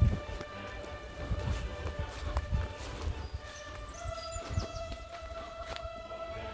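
Background music of held, steady notes that move to a new note about four seconds in, over irregular footsteps on grass and fallen leaves, with a few short high chirps in the middle.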